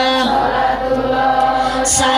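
Voices chanting a sholawat (Islamic devotional song) in long, held, slowly bending notes. A brief sharp crackle comes near the end.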